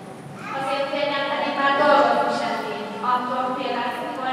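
Speech: a single voice talking in a large church hall.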